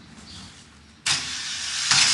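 Inline skates grinding down a metal stair handrail. A sudden loud scraping hiss starts about a second in as the skater lands on the rail, and it grows louder toward the end.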